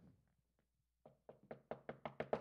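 A run of light knocks on a lectern, about four or five a second, starting faint about a second in and growing louder.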